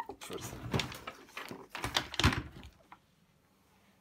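Handling noise from a small wooden-cabinet valve guitar amp being gripped by its carrying handle and turned around on a bench: a few seconds of scraping and knocking, loudest just after two seconds in, then it stops.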